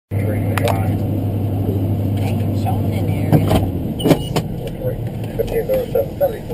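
Steady low hum that cuts off a little past halfway, with a few sharp clicks, then a voice starts near the end.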